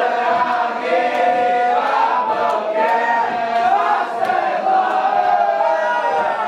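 A roomful of teenage boys' voices singing a slow melody together in unison.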